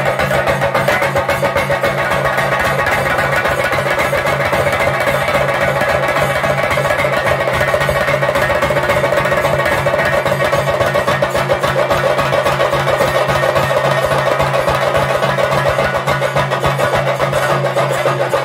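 Ritual drumming on chenda drums, beaten fast and without a break with sticks, under a reedy wind instrument playing a wavering, sustained melody, over a steady low drone.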